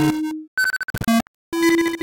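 Disjointed synthesized notes, each starting and stopping abruptly with short silences between. A held mid-pitched tone is followed by a quick cluster of higher blips, then another held tone near the end.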